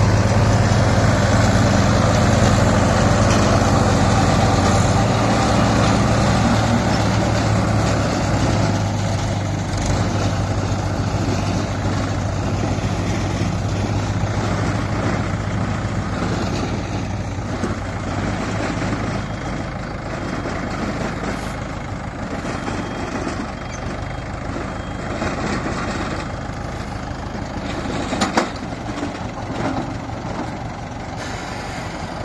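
Mahindra tractor diesel engines running steadily under load while pulling small round balers through paddy straw, with the balers' pickup and chamber machinery working. The engine hum is strongest for the first several seconds, then fades and leaves a rougher mechanical clatter, with one sharp knock near the end.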